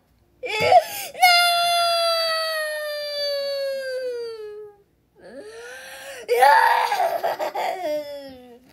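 A high-pitched voice crying: a short sob, then one long wail that slowly falls in pitch for about three and a half seconds. After a short break comes a louder, broken cry that turns into a laugh near the end.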